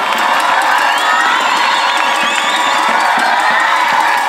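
A large crowd cheering and shouting loudly and steadily, with a few higher voices wavering above the mass.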